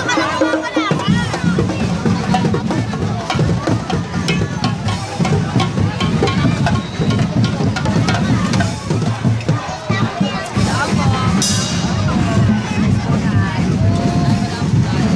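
Drum-led music playing over a crowd of people talking and calling out.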